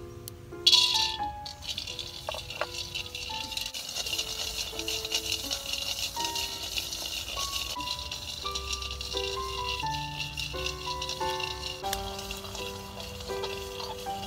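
Peanuts frying in a little oil in a wok over a charcoal stove: a sudden loud sizzle as they are tipped into the hot pan about a second in, then steady crackly sizzling and rattling as they are stirred with chopsticks. Background music plays throughout.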